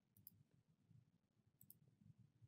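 Near silence, broken by two faint clicks of a computer mouse, one just after the start and one near the end.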